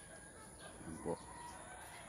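A rooster crowing faintly: one drawn-out call heard under a brief spoken phrase.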